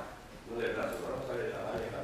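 A man speaking indistinctly, with a short pause soon after the start; his words are too unclear to make out.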